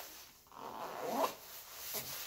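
Soft rustling of a lightweight nylon rain-jacket shell as hands handle the front of the jacket. It swells for about a second, starting about half a second in, with a faint sweep near its end.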